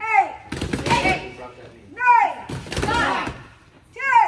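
Boxing gloves smacking against focus mitts in quick clusters of blows from several pairs. A voice calls out a count about every two seconds to keep the punches in time.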